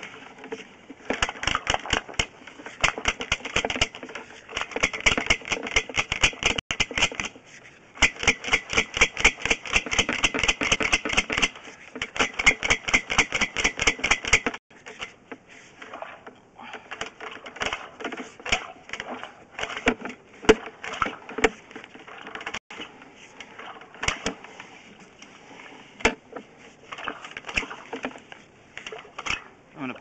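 Sewer inspection camera rig being pushed into a cast iron sewer line: rapid clicking, about seven clicks a second, in bursts of a few seconds with short breaks, growing sparser and irregular about halfway through.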